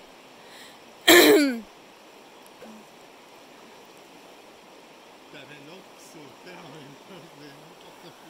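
River current running over a shallow stony bed in a steady rush. About a second in, a person gives one short loud exclamation, its pitch sliding down, and faint low voices follow in the second half.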